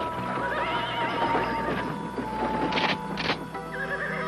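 A horse's long, wavering whinny over background music, followed by two sharp knocks near the end.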